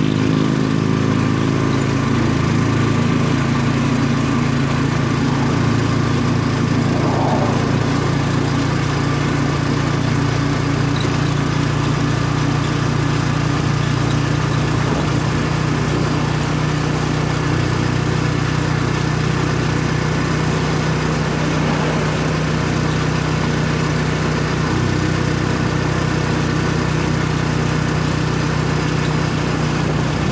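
Small engine of the vehicle carrying the camera, running at a steady cruising speed with an unchanging pitch.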